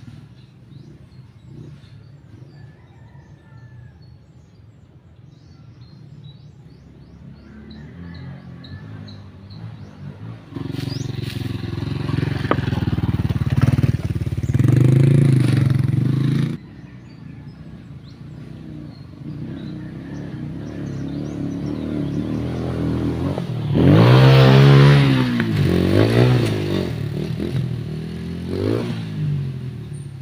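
Dirt bike engine riding a trail close by, in two loud passes: the first builds up and is cut off suddenly a little past the middle, the second rises and falls in pitch as the throttle is worked.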